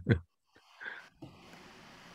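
The tail of a man's spoken word cutting off, then dead silence, a faint short sound about a second in, a click, and low hiss over a video-call connection.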